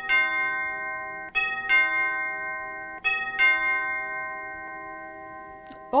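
Recorded doorbell chime played through a portable CD player's speaker: three two-note ding-dong strikes about a second and a half apart, each ringing on and slowly fading.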